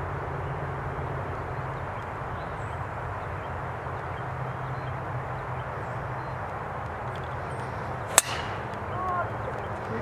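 A golf iron striking a teed ball: a single sharp crack about eight seconds in, over a steady low background hum.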